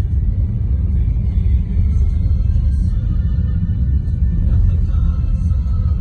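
Steady low rumble of a car driving on a snow-covered road, heard inside the cabin, with faint music over it.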